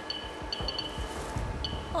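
Geiger counter clicking at an irregular, sparse rate as its pancake probe is held to a watch with tritium-lit markings, over background music. Each click marks ionizing radiation passing through the detector, here at a rate near background.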